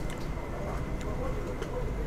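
Murmur of diners talking in the background, with a few light clicks of tableware: a plastic spoon working in a small steel rice cup.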